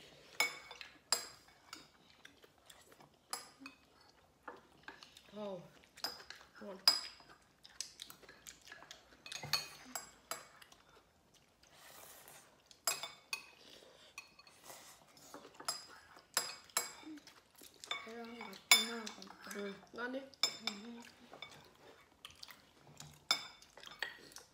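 Spoons clinking against ceramic bowls and a clay pot during a meal: many short, sharp, ringing clinks scattered irregularly throughout, with a little quiet talk in places.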